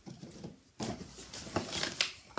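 Handling noise: fabric and toys rubbing against the recording device's microphone, an uneven rustling with a few soft knocks.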